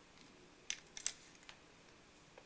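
Electric range infinite switch turned by hand to the on position: a few faint small clicks, three close together about a second in.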